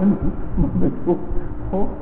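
A man speaking Thai in short, broken phrases, with a steady low hum coming in about a second in.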